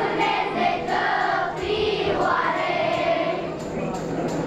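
A large children's choir singing together.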